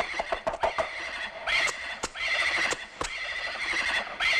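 A horse whinnying in several short bursts, with a quick run of sharp clicks about half a second in.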